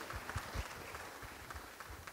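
A few scattered claps from the audience with soft low thumps, fading away.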